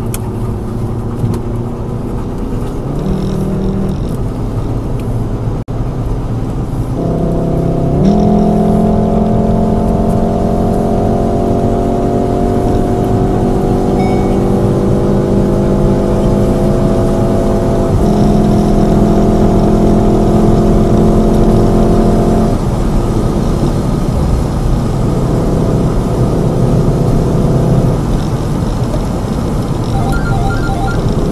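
Car engine and tyre/road noise heard from inside the cabin at highway speed. About eight seconds in, the engine note comes up under hard acceleration and climbs slowly in pitch. It breaks briefly at about eighteen seconds, then falls away at about twenty-two seconds, leaving mostly road noise.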